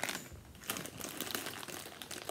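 Crinkly chip bag rustling and crackling as a hand reaches into it, a dense run of small crackles starting about half a second in.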